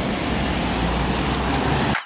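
Steady hum of road traffic, an even noise with a low rumble underneath.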